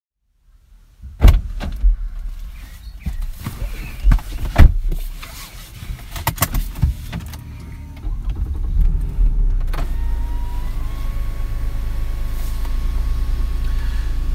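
Knocks and clicks of handling inside a car for several seconds. From about eight seconds in, a steady low engine hum holds as the car idles.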